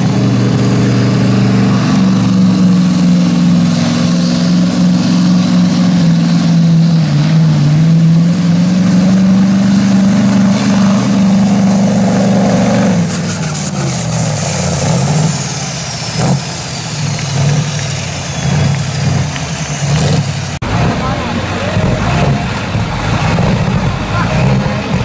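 Scania truck's diesel engine pulling a weight-transfer sled under full load, running at high, steady revs with a brief sag about seven seconds in. About halfway through, the steady engine note breaks off into a rougher, uneven engine sound with a faint falling whine.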